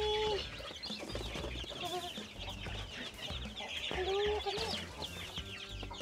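A brood of day-old Dominant CZ pullet chicks peeping continuously, a dense stream of quick high chirps. A few lower, longer calls break in near the start, about two seconds in, and around four seconds in.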